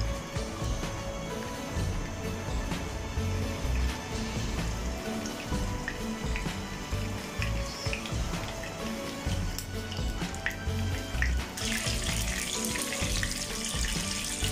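Beef gola kababs shallow-frying in hot oil in a pan, the oil sizzling and crackling around them. The sizzle becomes much louder and denser near the end.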